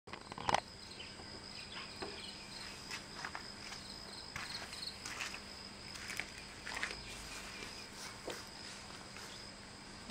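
Insects trill steadily on one high tone. Scattered footsteps and small knocks cut through it, with a sharper knock about half a second in.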